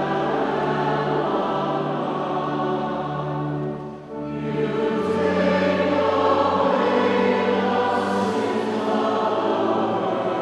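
Choir singing liturgical music with sustained accompaniment chords. The phrase breaks off briefly just before four seconds in, then resumes fuller and louder.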